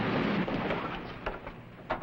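Steamboat engine-room machinery running at full steam, a steady noisy din that fades out over the first second and a half. A few sharp knocks follow near the end.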